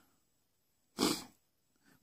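A single short, breathy rush of air from a man, about a second in, most likely a breath taken between sentences; otherwise dead silence.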